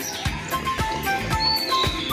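Background music with a steady beat about twice a second and a line of short, high melody notes.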